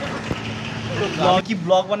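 Mostly speech: a man talking over a steady background noise with a low hum in the first second.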